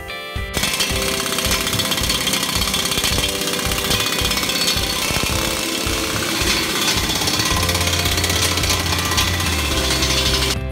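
Impact wrench hammering continuously as it runs down the hub bolts on a tractor's front dual wheel, starting about half a second in. Music plays faintly underneath.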